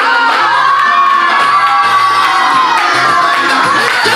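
Party guests cheering, with one long high shout held for about three seconds, over dance music with a bass line.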